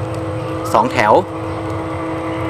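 A steady low hum with a few held tones runs throughout, with a man speaking briefly about a second in.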